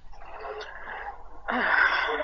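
A person breathing audibly close to the microphone: a faint breathy hiss, then a louder breath about a second and a half in, just before speaking.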